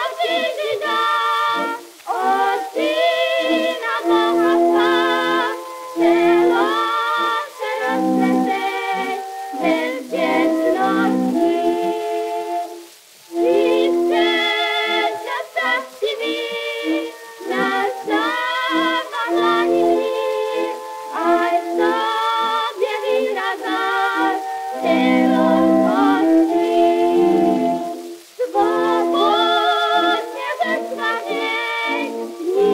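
1919 acoustic-era 78 rpm shellac record of a soprano and alto duet sung in Czech with vibrato over organ accompaniment, its sound narrow and thin, with no top end. The singing breaks off briefly twice, near the middle and near the end.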